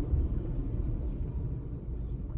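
Low, steady rumble of a car driving slowly, mostly road and engine noise, easing off slightly as the car slows.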